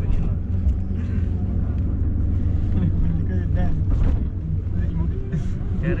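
Minibus engine and road noise heard from inside the passenger cabin while it drives: a steady low rumble, with faint passenger voices over it.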